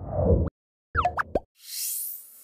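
End-card sound effects for an animated subscribe screen. A low swelling rumble lasts about half a second, then three or four quick rising pops come about a second in, and a high shimmering sparkle sweeps in near the end.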